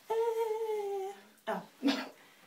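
A woman humming one held note for about a second, drifting slightly down in pitch, then two short breathy sounds.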